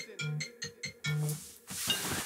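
Smartphone ringing for an incoming call: a melodic ringtone of short repeated pitched notes, which stops shortly before the end.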